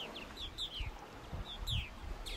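A flock of purple martins calling in flight: many short, downward-sliding chirps, several a second and overlapping, with a few low rumbling thumps underneath.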